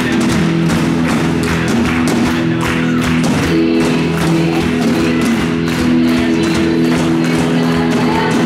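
Live worship band playing: a drum kit with cymbals hitting a steady beat under sustained chords, with electric guitar among the instruments.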